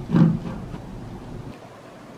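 A brief bit of a woman's voice at the very start, then faint steady background noise (room tone) with no distinct event. The background changes slightly about one and a half seconds in.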